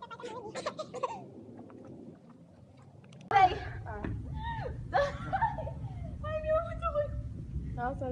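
Girls gulping water from plastic cups with small clicks and swallows, then about three seconds in a sudden loud shriek breaks into laughing and giggling. From the shriek on, a steady low rumble of wind or handling noise sits on the microphone.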